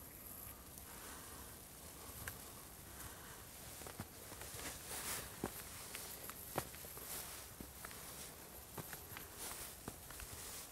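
Faint, irregular footsteps scuffing and crunching on concrete steps and dry ground, with a few sharper clicks over a steady hiss.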